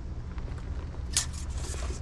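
Steady low background rumble, with a short breathy hiss about a second in.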